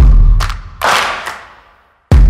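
Cinematic sound-effect hits for an animated logo: a deep boom at the start, a lighter hit about half a second in and a whoosh-like swell near one second, all decaying away before the end.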